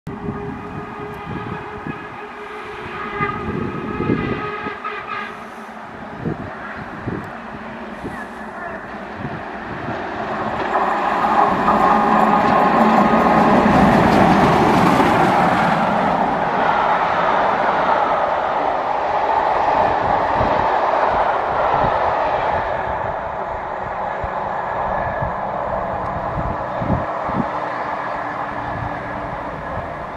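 Steam railtour double-headed by LMS Jubilee 45596 'Bahamas' and LNER B1 61306 'Mayflower' passing through a station at speed. A train whistle sounds in the first few seconds; the noise of locomotives and carriages then swells to its loudest about 12 to 16 seconds in and slowly fades as the train runs away.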